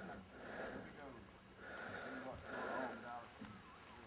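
Faint, indistinct voices talking at a distance, too low for words to be made out.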